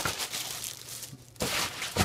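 Rustling and crinkling of a cloth shopping bag and the packaged groceries and paper receipt inside it as they are handled, dying down about halfway through and picking up again near the end.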